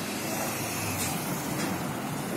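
Steady low rumble of heavy-vehicle engines.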